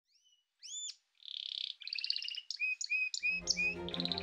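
Animal calls in a quick series of chirps, arching whistled notes and a short buzzy trill. Music with a low sustained backing comes in a little after three seconds.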